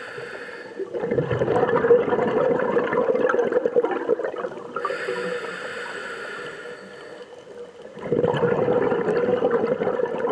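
A scuba diver breathing through a regulator underwater: exhaled bubbles gurgle from about a second in until about four and a half seconds, then a quieter inhalation with a thin hiss from the regulator, and another burst of exhaled bubbles starts near the end.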